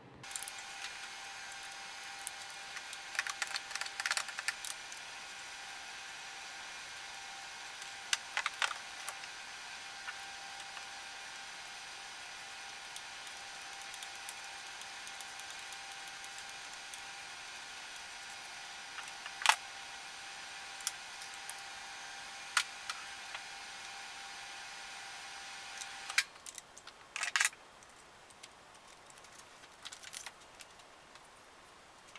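Scattered metal clicks and clinks of hand tools working on the timing-belt end of an engine, with a few sharper knocks, over a steady hiss that cuts off about 26 seconds in.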